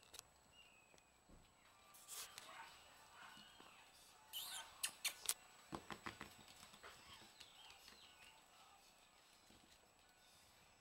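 Faint clicking and tapping of puppies' claws on a wood floor as they scamper and play, with a cluster of sharper taps about four to five seconds in.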